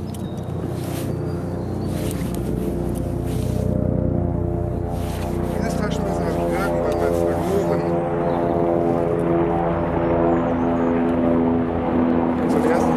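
A steady engine drone with an unchanging pitch, growing gradually louder.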